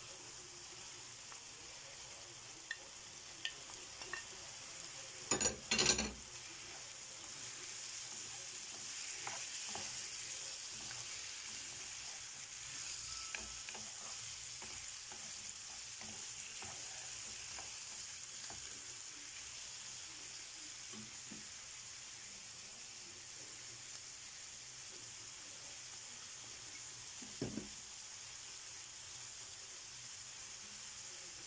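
Shrimp and diced vegetables sizzling steadily in a frying pan while being stirred with a wooden spoon. A couple of sharp clatters come about five to six seconds in, and a single knock near the end.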